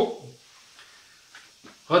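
A man's voice trailing off at the start, then a short quiet pause with a couple of faint clicks, and his speech starting again near the end.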